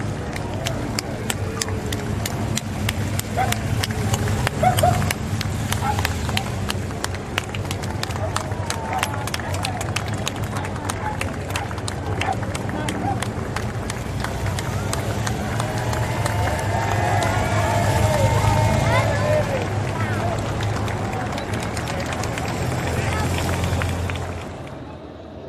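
Roadside crowd, with scattered hand-clapping throughout and voices calling out that swell about two-thirds of the way through, over a steady low engine rumble from a slow-moving motorcycle and car escort.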